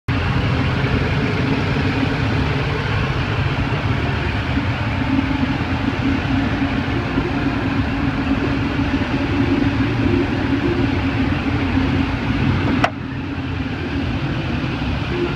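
2006 Saab 9-3's 2.0-litre turbocharged four-cylinder engine idling steadily, heard close up from the engine bay. Near the end there is a sharp click, after which the engine sound drops and is duller.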